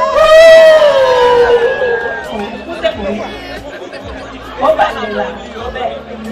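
A high voice holds one long note for about two seconds, then slides down, followed by the chatter of guests in a large hall.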